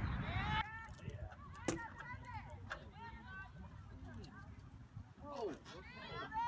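Distant shouts and calls from players and spectators at a soccer match, over a low wind rumble that stops shortly after the start; a sharp knock comes about a second and a half in.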